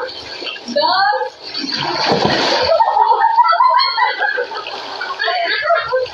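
Shallow pool water splashing as people tumble into it, one burst of splashing about two seconds in, among excited voices.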